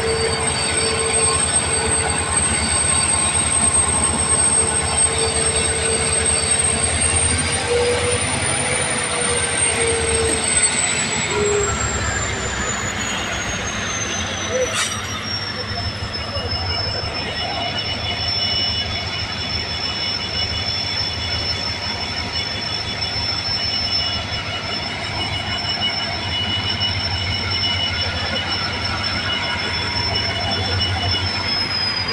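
Freight train rolling slowly past with its steel wheels squealing on the rails. The squeal holds a high, steady pitch, glides down in pitch about halfway through, then holds steady again, over the low rumble of the diesel locomotive.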